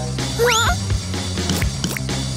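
Background cartoon music with one short yelp about half a second in, its pitch sweeping sharply upward.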